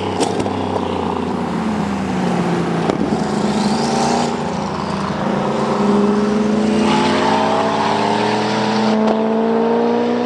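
Race car's engine on track, its pitch dropping over the first couple of seconds as it slows, then climbing steadily through the second half as it accelerates.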